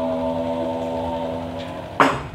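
A long, steady held note with several even tones during a wayang kulit performance, cut off by a sharp knock at the very end.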